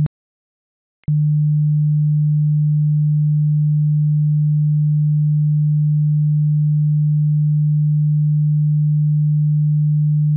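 Steady 150 Hz sine test tone, a pure low hum. It cuts out for about a second at the start, then comes back with a small click and holds steady.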